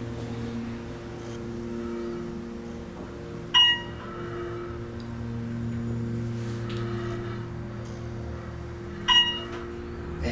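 Otis elevator car travelling upward with a steady electrical hum, and a ringing electronic chime sounding twice, about five and a half seconds apart, as the car passes floors.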